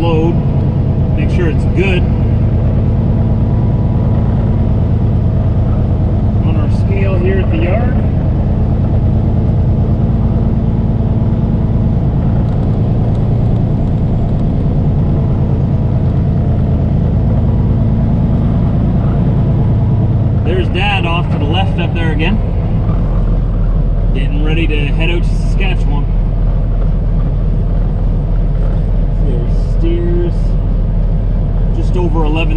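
Semi-truck diesel engine running at low speed, heard from inside the cab as a steady low drone. About two-thirds of the way in, its note shifts to a deeper, even hum.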